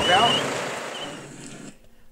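A voice trailing off over steady outdoor traffic noise, which fades and then cuts off suddenly near the end.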